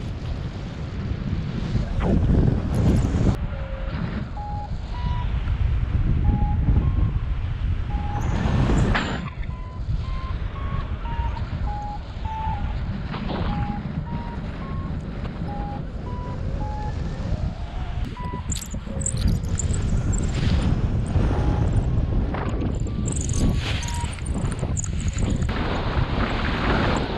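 Wind rushing over the microphone in paraglider flight, with a variometer's short beeps, about one a second, stepping up and down in pitch: the vario signalling lift.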